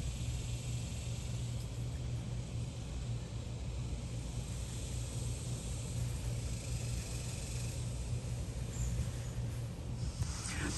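Steady low rumble of outdoor background noise with no distinct events.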